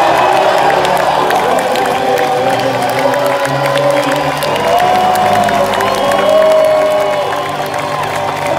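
Theatre audience cheering and applauding over the piano accompaniment, which keeps playing sustained chords as a sung improv number finishes.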